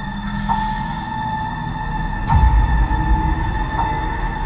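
Suspenseful horror film-trailer score: a steady high drone over low rumbling, with a deep boom a little over two seconds in.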